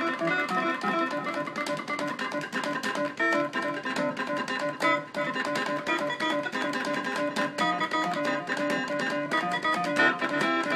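Microtonal improvisation played on an AXiS-49 hexagonal keyboard controller driving a synthesizer: dense, rapid runs of notes and chords with a plucked, guitar-like attack.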